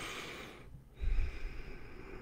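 A man breathing close to the microphone: a hissing in-breath at the start, then about a second in a heavier out-breath through the nose with a low puff of air on the mic.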